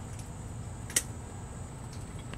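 A single sharp snip of hand pruning shears cutting through a twig of nectarine scion wood, about a second in. A faint steady high-pitched whine and low outdoor background noise run underneath.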